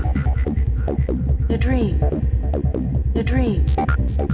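Old-school goa trance track at about 145 beats a minute: a steady pounding kick and bassline under hi-hats, with synth notes that swoop up and down in short arcs.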